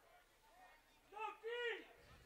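A voice shouting across the football field, calling out twice in quick succession about a second in, high-pitched and strained, over faint scattered voices.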